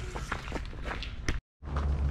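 Footsteps on a gravel-and-dirt track as a handheld camera is carried, with irregular crunches over a low rumble of handling on the microphone. The sound cuts out completely for a moment about a second and a half in, then the low rumble resumes.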